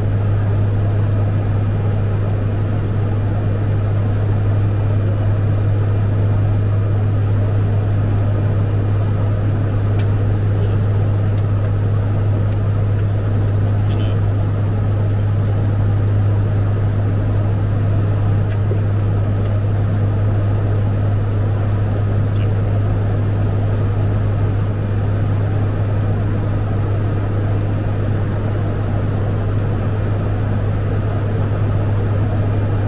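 Fokker 50's turboprop engines and propellers droning steadily in the cockpit near cruise level: a deep, even hum that does not change, over a constant rushing background.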